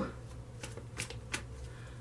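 A deck of tarot cards being shuffled by hand, quietly, with a few light card snaps about half a second to a second and a half in, as cards jump out of the deck.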